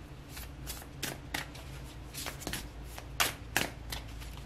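A deck of tarot cards being shuffled by hand: an irregular string of short, soft card snaps and flicks, two louder ones a little past the middle.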